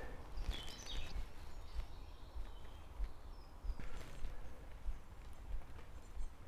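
Quiet woodland ambience: faint short bird chirps over a low, unsteady rumble, with a few soft footsteps on the path.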